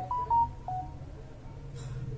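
A quick run of four short electronic beeps at different pitches, like phone keypad tones, in the first second, over a steady low hum, with a brief rustle near the end.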